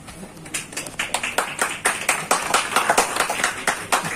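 A small audience clapping by hand: irregular, overlapping claps that begin about half a second in and quickly thicken into steady applause.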